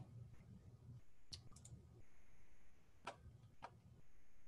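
Faint computer mouse clicks over near silence: a quick cluster of three just over a second in, then two more about three seconds in.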